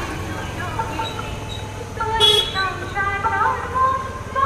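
Busy street noise with voices and traffic, and a brief vehicle horn toot about halfway through.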